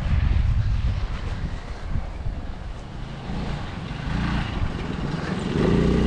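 Small go-kart engine running as the kart drives across the field, heard under wind rumbling on the microphone.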